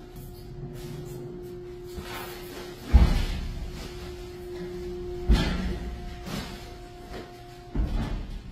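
Commercial trash compactor running: a steady motor hum, with two heavy thuds about three and five seconds in and a lighter one near the end as the ram crushes its load.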